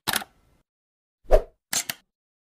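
Short animation sound effects from a YouTube subscribe end screen: a brief pop at the start, a louder pop with a low thump past the middle, and a quick double click near the end.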